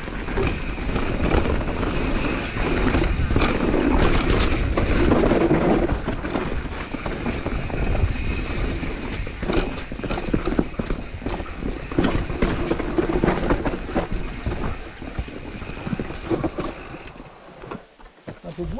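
Propain Spindrift enduro mountain bike ridden fast down a dirt forest trail: a steady rolling noise of tyres over dirt and roots, broken by many quick knocks and rattles as the bike hits the rough ground. The noise dies down near the end as the bike slows.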